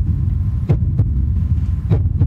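A low, steady droning hum with three short soft knocks in the middle and near the end: a dramatic sound-effect underscore.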